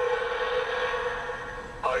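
Animated skeleton butler Halloween prop's built-in speaker playing a single steady held note for nearly two seconds, between its spoken lines. Its recorded voice starts again near the end.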